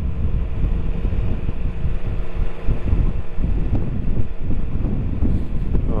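Motorcycle riding at low town speed, its engine running steadily under heavy wind rumble on the microphone, with a faint steady hum during the first couple of seconds.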